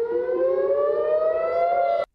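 Civil-defence air-raid siren wailing, one long tone rising slowly in pitch.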